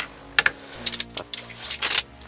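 A quick series of sharp clicks and light knocks from tools and workpieces being handled on a workbench, spread unevenly through the pause.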